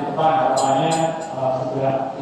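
A man's voice through the church's microphone and loudspeakers, drawn out in long, nearly level-pitched sounds like a held hesitation 'eee' between phrases. It breaks off briefly twice, once just after the start and again a little past halfway.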